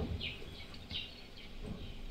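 A quiet pause in a room, with low room tone and a few faint short high chirps in the first second.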